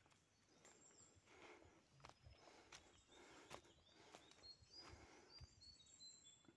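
Faint footsteps on a forest path, with short high bird chirps, more of them near the end.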